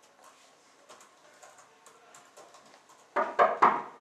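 Faint clicking of keys typed on an HP 6735b laptop keyboard. About three seconds in, a much louder pitched sound comes in three quick pulses.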